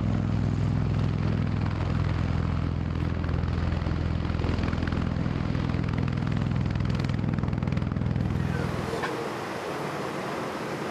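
V-22 Osprey tiltrotor hovering close by: a loud, steady, deep drone from its rotors and engines, with a rapid pulsing beat. It fades about a second before the end.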